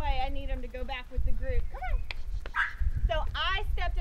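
A woman's voice talking, with a steady low wind rumble on the microphone and one sharp click about halfway through.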